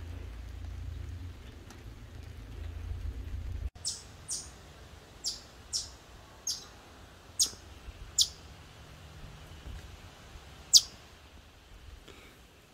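About eight short, sharp, high-pitched chip calls from a small animal, each dropping quickly in pitch, repeated at uneven intervals. A low rumble of background noise fills the first few seconds before the calls begin.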